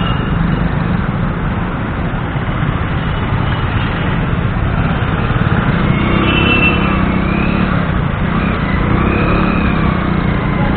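Riding on a two-wheeler in city traffic: a steady low engine and wind rumble, with a few short higher-pitched sounds from the surrounding traffic coming through from about six seconds in.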